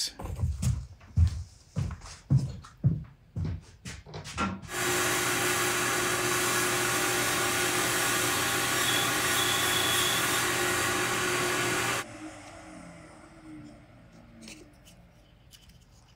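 Several light knocks of wooden pieces handled on a workbench. Then a power tool's motor runs steadily for about seven seconds, is switched off, and winds down with a falling tone.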